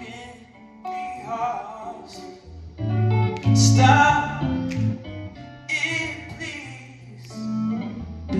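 Live jazz: an electric guitar plays chords and fills over upright double bass notes in a pause between sung lines.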